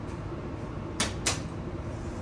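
Two sharp clacks about a third of a second apart, over a steady low hum.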